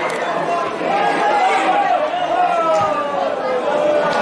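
Many overlapping voices chattering and calling out at once, with no words clear, at a steady level.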